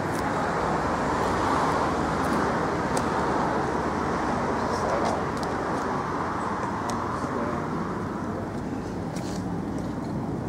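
Steady city road-traffic noise, an even rumble and hiss of passing cars without a distinct single vehicle standing out.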